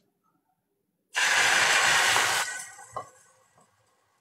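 About a second in, a loud steady hiss starts suddenly, holds for about a second and a half, then fades away, with a click as it dies down.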